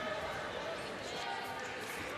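Steady background noise of a kickboxing hall during the bout, with faint voices.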